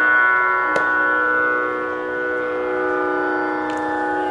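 Tanpura drone: the open strings' steady held tones sounding the tonic, with a sharp pluck about a second in and another near the end.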